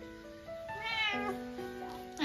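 A Munchkin cat meowing once, briefly, about a second in, over background music.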